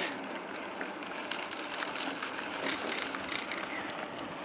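Steady riding noise from a bicycle on rough, cracked asphalt: tyres rolling with wind across the microphone, and faint small clicks and rattles throughout.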